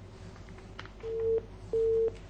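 Telephone line tone heard over a phone-in connection: two short, steady beeps at one pitch, each about a third of a second, starting about a second in, like a busy signal, as a caller's line is connected. Low steady hum underneath.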